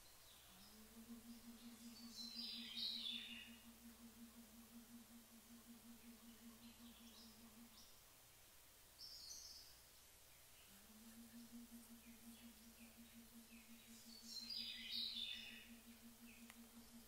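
A woman softly humming a mantra on one long steady note, held about seven seconds, then after a breath a second time. Birds chirp faintly three times.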